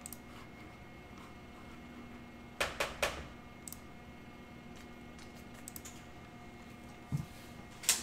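Quiet room with a faint steady hum, broken by a few sharp clicks: two close together about two and a half to three seconds in, a few faint ticks, then a soft thump and a click near the end.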